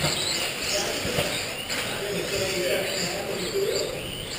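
Indistinct voices echoing in a large indoor hall, with the high whine of electric 2WD RC buggy motors rising and falling as the cars race around the track.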